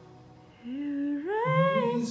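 A man's amplified singing voice comes in about half a second in over fading backing music, starting on a low note and gliding up about an octave.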